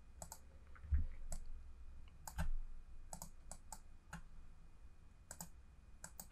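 Quiet clicks of a computer mouse and keyboard: a dozen or so short, sharp clicks at irregular intervals, some in quick pairs like double-clicks.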